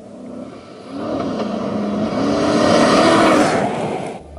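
A Ford Crown Victoria's V8 driving hard on a dirt road toward and past close by, its engine note rising and falling twice over the rush of tyres on dirt. It grows louder from about a second in and is loudest around three seconds in.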